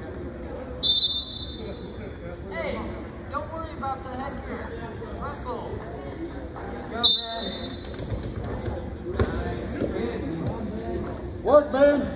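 Two short, sharp referee's whistle blasts in a gymnasium, about a second in and again about seven seconds in, each ringing on briefly in the hall. Coaches and spectators call out throughout, with a shout of "Work" near the end.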